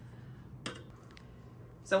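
A brief light click from handling the unscrewed oven door, and a fainter tick about half a second later, over quiet room tone with a low steady hum.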